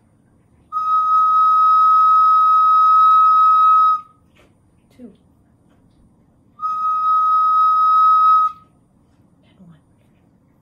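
Wooden recorder playing two long held notes on the same high pitch, a steady tone about three seconds long, then a pause of about two and a half seconds, then a second note of about two seconds.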